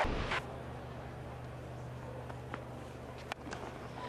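Quiet cricket-ground ambience: a steady low hum under a faint crowd background, with a few faint short clicks. A brief sound at the very start comes with the boundary graphic.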